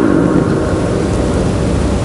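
Steady hiss with a low rumble beneath it: the constant background noise of the lecture recording, heard on its own in a pause in the speech.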